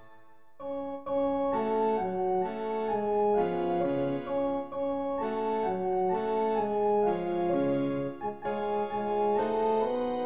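Electronic rehearsal accompaniment on a keyboard sound, with the alto voice line played on an oboe sound, moving in steady held notes. It comes in after about half a second of silence at the start.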